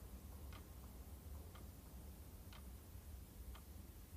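Faint ticking of a clock, about one tick a second, over quiet room tone.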